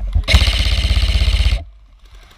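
A VFC Avalon Saber Carbine M4 airsoft electric rifle (AEG) fires a full-auto burst of just over a second, its gearbox cycling rapidly, and stops abruptly.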